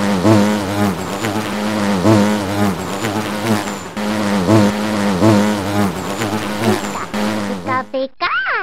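Cartoon bee buzzing sound effect: a loud, continuous buzz whose pitch wobbles up and down in a repeating pattern a little more than once a second.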